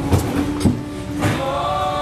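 Electric bass (an MTD custom six-string) played through an amp: three sharp low notes, about half a second apart, over steady held tones of other music.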